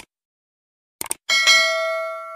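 Short clicks at the start and a quick double click about a second in, then a notification-bell chime sound effect from a subscribe-button animation rings out and slowly fades.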